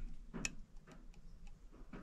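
One sharp click about half a second in, then a few faint ticks: a folding pocketknife being handled against the metal hook of a tape measure.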